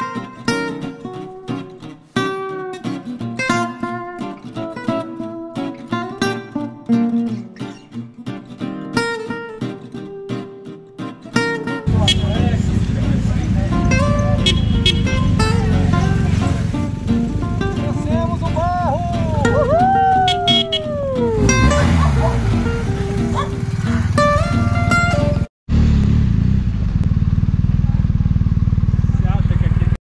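Acoustic guitar music for about the first twelve seconds. Then a loud, steady outdoor rumble with the engines of two BMW R 1250 GS boxer-twin motorcycles riding up across a grass field, and a few rising-and-falling calls a few seconds later. The sound cuts off briefly near the end and comes back as a steadier rumble.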